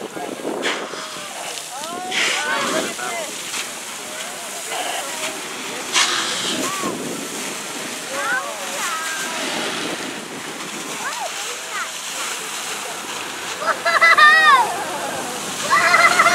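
Water jets from fire hose nozzles splashing down onto the harbour surface, a steady hiss of falling spray. Bystanders' voices come and go over it and are loudest near the end.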